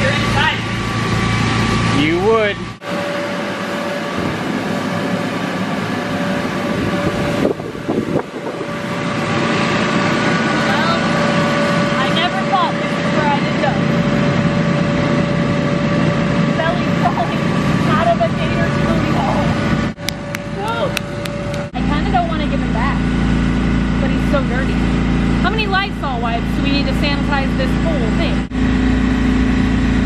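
The electric blower of an inflatable bounce house running with a steady hum. Over it come short bursts of laughing and squealing voices, and the hum shifts at several cuts.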